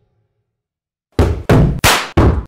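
Near silence, then a run of loud, evenly spaced thuds, about three a second, starting just over a second in.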